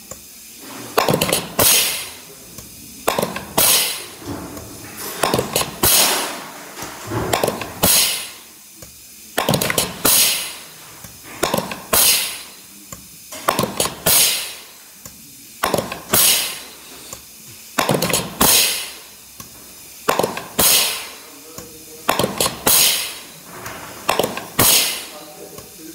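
ZF transmission gear-shift tower being cycled on the bench by compressed air: each shift is a sharp metallic clack of the pistons and shift rails followed by a short burst of air hiss, repeating about every one and a half to two seconds.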